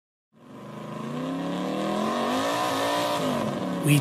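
A car engine fades in from silence and revs, its pitch rising and then falling toward the end, as the recorded opening of a song track.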